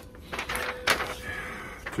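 Sheets of paper being handled and shuffled, with a sharp tap about a second in.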